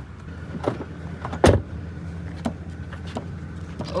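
A hand knocking and pressing on a Tesla Model 3's charge port door that won't open: several short knocks, the loudest about a second and a half in, over a steady low hum.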